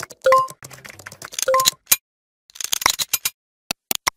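Computer mouse click sound effects: a quick run of sharp clicks about two and a half seconds in, then single clicks near the end, with short silences between. In the first half, the tail of an intro jingle with two short beeps and a low hum, mixed with a few clicks.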